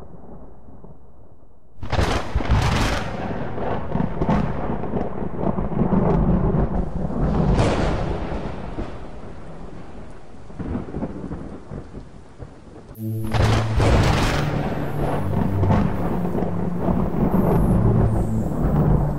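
Thunder with rain: a rumble dying away, then a sudden loud crack about two seconds in that rolls on and fades over about ten seconds, and a second clap a little after halfway. Low sustained musical notes come in with the second clap.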